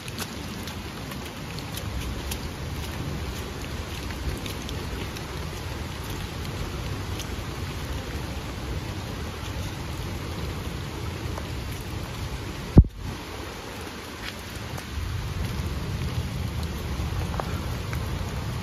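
Steady rain falling on leaves and wet ground, a continuous hiss with scattered drop ticks over a low rumble. One sharp thump about 13 seconds in.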